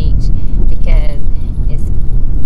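Steady low rumble of a car's engine and tyres heard inside the cabin while driving, with a short voice about a second in.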